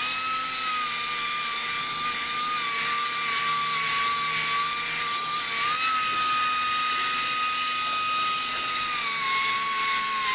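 Air-powered angle grinder with an abrasive disc spinning up sharply and then running with a steady high whine while grinding down a butt weld on steel plate. Its pitch rises when it is lifted off the metal a little under six seconds in, and drops again as it bites back into the plate about a second before the end.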